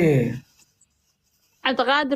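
A person's voice: a short vocal sound with a falling pitch, about a second of silence, then the voice again near the end on held, steady notes.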